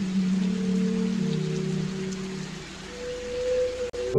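Dark meme soundtrack stretch: a steady rain-like hiss over a few low held tones, taking the place of the piano music and cutting off suddenly near the end.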